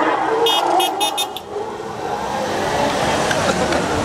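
Car horn sounding a quick run of about five short high beeps, over the running engines of cars driving slowly past and general street noise.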